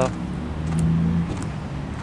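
A motor vehicle's engine running with a steady low hum, coming in about half a second in.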